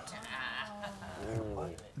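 A woman's long wordless vocal moan of dismay, held at first, then wavering and sliding down in pitch.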